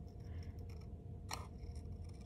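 Small scissors snipping through scrapbook paper, cutting along a traced line: faint short cuts, with one sharper snip a little past halfway.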